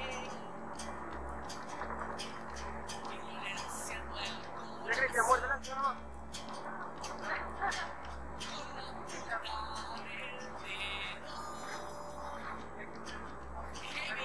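Indistinct voices over a steady low hum, with one short, louder burst of voice about five seconds in.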